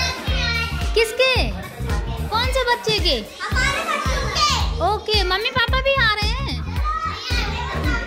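A group of young children shouting, squealing and chattering as they play, their voices high-pitched and overlapping, over music with a steady beat.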